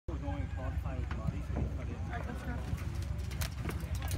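Indistinct voices of players and spectators calling across a soccer field, over a steady low rumble, with a couple of sharp taps near the end.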